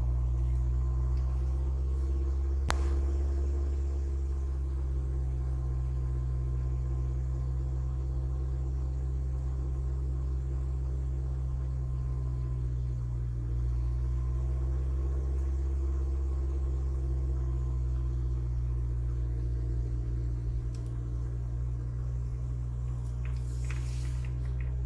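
A car driving along a paved road, heard from inside the cabin: a steady low engine and road drone. A single sharp click comes about three seconds in.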